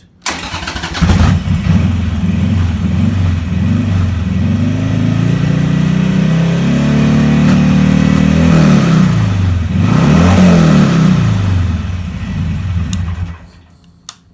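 Harley-Davidson V-twin motorcycle engine starting and being revved repeatedly, its pitch rising and falling, then switched off shortly before the end. The programmed rev limit does not cut in: the engine revs freely past it.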